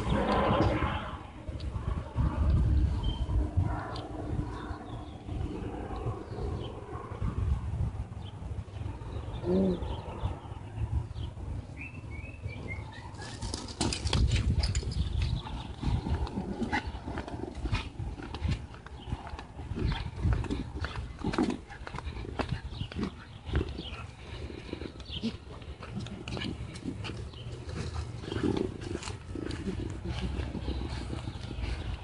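Low rumble of wind and handling on a handheld microphone during an outdoor dog walk. From about halfway, a run of light clicks and taps comes in: footsteps on pavement.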